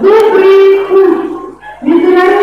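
A woman singing loudly into a microphone, holding long notes, with a short break for breath about a second and a half in before the next note.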